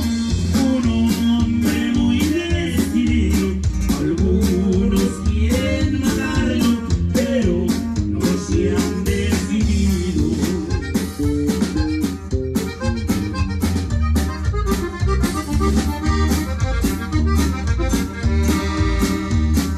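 Live norteño band playing, with a button accordion carrying the melody over a drum kit's steady beat and a strong bass line.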